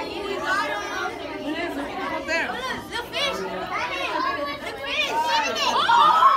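A crowd of children and adults chattering and exclaiming excitedly over one another, with shrill high-pitched voices that grow louder near the end.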